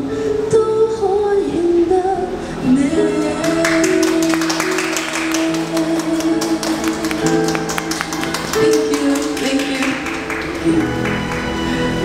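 The close of a Cantopop ballad performed live: a woman singing over a backing track, her last phrases fading into the track's instrumental ending of held chords. A run of sharp ticks sits in the middle.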